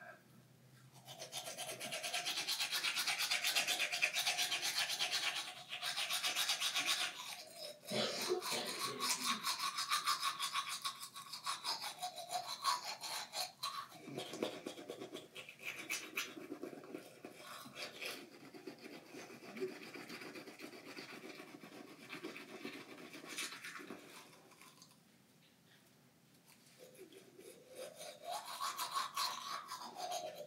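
Teeth being brushed with a manual toothbrush: a fast, scratchy scrubbing of bristles against teeth, loudest in the first several seconds, briefly stopping near the end and then starting again.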